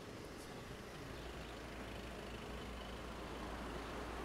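Street noise of road traffic: a steady low rumble of vehicle engines, growing slightly louder toward the end.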